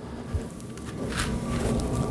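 Soft handling and shuffling noise as a flexible rubber sluice mat is picked up, with a faint scrape or two.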